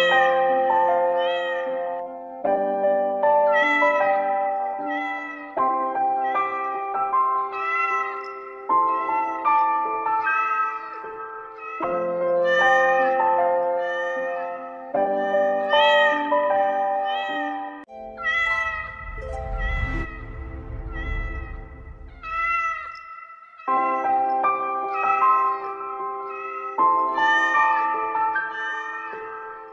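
Background music of held chord notes with cat meows repeated over it, roughly one a second. A low rumble rises under the music for a few seconds past the middle.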